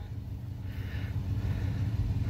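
Pickup truck engines running, a steady low rumble that grows a little louder toward the end.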